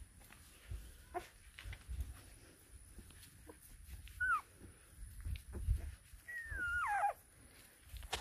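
Young Maremma–Great Pyrenees puppies whimpering: a short, high whine that falls in pitch about four seconds in, then a longer whine that slides downward near the end.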